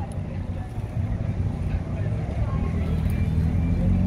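Car traffic ambience: a steady low rumble of vehicle engines.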